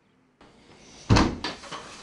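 A door shutting with one loud thump about a second in, followed by a lighter knock.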